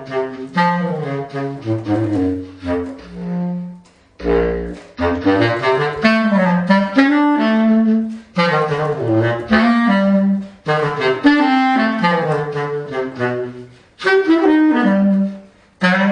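Selmer Paris Privilege bass clarinet played solo in quick jazz phrases of changing notes, reaching down into its low register, with short breaks between phrases about four seconds in and near the end.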